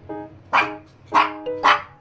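A Maltipoo puppy barking three short times, over background piano music.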